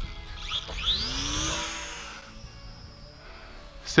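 Small electric motor and propeller of an Eachine Mini F4U Corsair RC plane: a whine that rises sharply in pitch as it is throttled up for a hand launch. It then drops in pitch and fades as the plane flies away.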